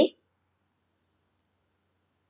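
A woman's voice finishing a word, then near silence: a dead-quiet pause in the narration.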